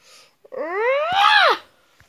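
A cat meowing once, a single call about a second long that rises in pitch and then falls.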